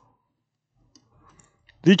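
A few faint, light clicks of metal tweezers on a small surface-mount chip on a circuit board, then a man starts speaking near the end.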